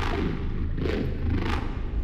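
Title-sequence sound effects: a steady deep rumble with two airy swooshes, about a second in and a second and a half in.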